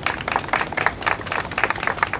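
Applause from a small group of people, the separate hand claps plainly distinct rather than merging into a roar.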